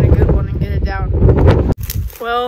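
Wind buffeting the microphone, a heavy low rumble under a voice talking. The rumble cuts off suddenly near the end.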